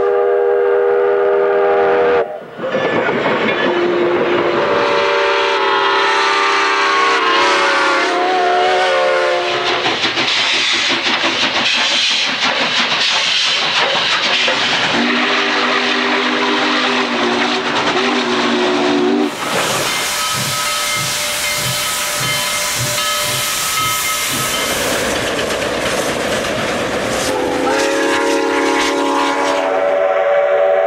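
Steam locomotive chime whistles blowing a series of long blasts, with the pitch bending as the whistle is feathered, against hissing steam and rolling train noise. Partway through, the whistle gives way to the regular chuffing of a steam locomotive's exhaust, and then a chime whistle blows again near the end.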